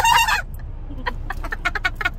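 A woman's high-pitched, excited squeal that ends about half a second in, followed by a run of light clicks and rustles from handling the gift.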